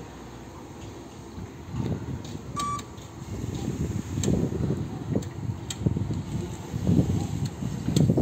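Battery-electric Linde reach truck manoeuvring at low speed: a single short electronic beep about a third of the way in, over an uneven low rumble that grows louder from about two seconds in.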